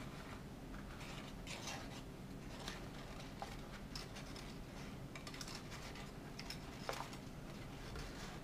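Folded origami paper rustling and crinkling faintly in the hands, with a few small crisp ticks, as the last box unit is worked into place as the lid of a modular paper cube.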